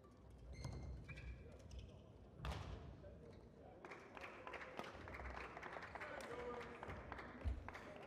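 A badminton rally, heard faintly: a quick run of sharp racket strikes on the shuttlecock from about halfway through, over the dull thuds of players' feet on the court, with a heavier thump near the end.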